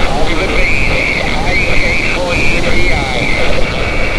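A distant amateur station's single-sideband voice coming through the Xiegu G90 transceiver's speaker on 17 meters. The voice sounds thin and garbled and sits in a steady hiss of band noise.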